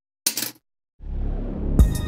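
A small metal TIG torch part is set down on a steel table with one brief clink. About halfway through, background music with a low beat comes in.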